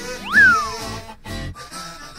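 A cat meowing once, the call rising and then falling in pitch, over background music.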